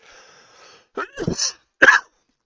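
A man laughing under his breath: a faint breathy exhale, then two short bursts of laughter, one about a second in and a louder one near the end.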